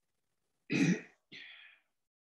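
A person clearing their throat: two short rasps about half a second apart, the first louder than the second.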